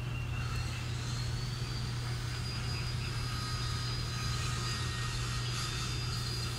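A steady low mechanical hum with faint thin high tones over it.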